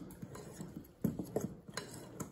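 A fork clinking and scraping against a glass mixing bowl while stirring melted butter into a thick batter, in irregular light taps a few times a second.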